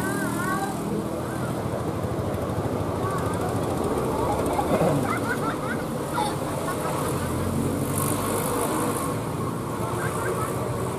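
Buses and other road vehicles driving past with steady engine noise, the engine sound rising again as a bus passes close near the end. Short voices call out briefly at the start and around the middle.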